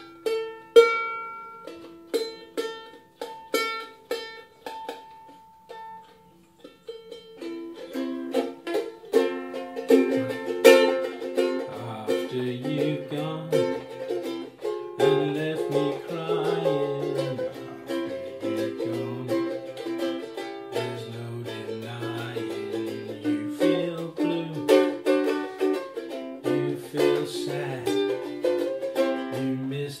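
Ukulele playing an old-time tune: single picked notes ringing out for the first several seconds, then steady strummed chords from about seven seconds in. A man's low voice hums along underneath from about ten seconds in.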